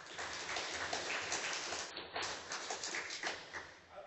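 Audience applauding: many scattered hand claps together, fading near the end.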